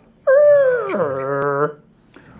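A man's voice imitating a car engine, one drawn-out 'brum' that starts high and drops in pitch midway, about a second and a half long.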